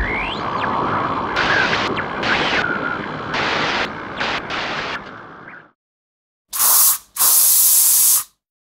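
Sound effects: a fading rumble with a rising whoosh and short hissing bursts, which dies away about two-thirds of the way in. Near the end come two loud bursts of spraying hiss.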